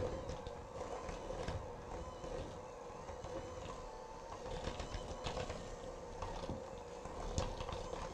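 Electric hand mixer running with a steady hum, its beaters working through a bowl of cream cheese frosting, with a few light knocks against the bowl.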